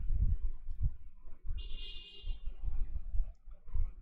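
Irregular low thumps and clicks close to the microphone, with a faint high tone for about a second near the middle.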